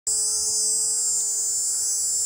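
Steady, high-pitched buzzing drone of cicadas in the hillside scrub, unbroken throughout, with a faint steady low hum beneath it.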